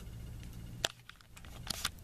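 Light handling clicks from a firework rocket being set down and moved on a tabletop: one sharp click about a second in and a few softer ones near the end, over a low steady hum.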